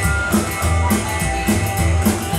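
Live rockabilly band playing: drum kit, electric guitar and double bass, the bass walking a steady line under regular drum hits.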